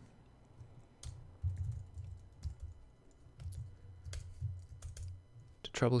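Typing on a computer keyboard: scattered key clicks at an irregular pace.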